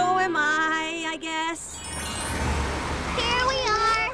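Cartoon soundtrack: background music with short, high, wordless character vocal sounds. A noisy swell with a low rumble comes in the middle, and a rising, wavering voice sound comes near the end.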